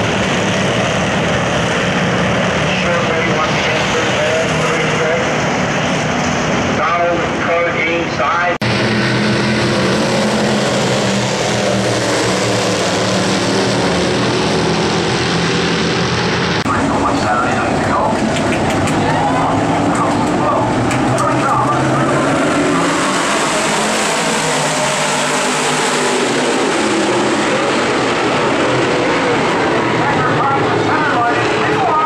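Dirt-track race cars, street stocks and then dirt modifieds, running at full throttle in a pack, their V8 engines rising and falling in pitch as they pass. The sound changes abruptly about 8 and 17 seconds in, where one clip gives way to the next.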